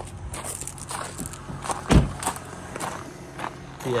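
Footsteps crunching on gravel as a person walks around a parked car, with one louder, deeper thump about two seconds in.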